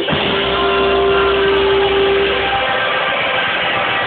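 A live rock band playing loudly in a club, with drums and electric guitar. One note is held for about the first two and a half seconds and then dies away while the band plays on.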